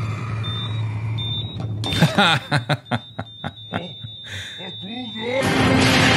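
Cartoon explosion sound effect: a sudden loud boom about five and a half seconds in that runs on as a dense rumble. Before it, a few short phrases of cartoon dialogue are heard.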